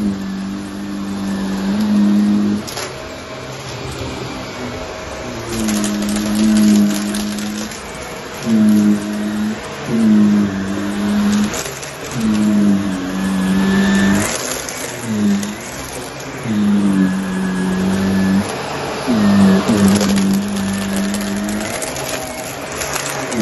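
Shark upright vacuum cleaner running on carpet. Its motor hum dips and recovers with each push-and-pull stroke, about every two seconds, over a steady rush of suction.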